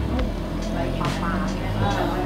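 A steady low hum, with faint voices in the background about a second in and again near the end.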